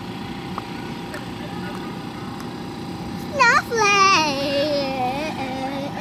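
A young girl's high-pitched voice: a quick rising squeal about three seconds in, then a held, wavering sung note of about two seconds. Under it runs a steady low background hum.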